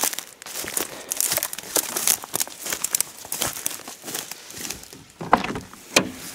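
Footsteps through dry weeds and brush, with an irregular run of crackling and snapping twigs and stems underfoot.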